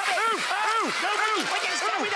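Water spraying with a steady hiss, overlaid by quick, repeated high-pitched cries that rise and fall about four times a second: yelps and laughter as a man is squirted with water.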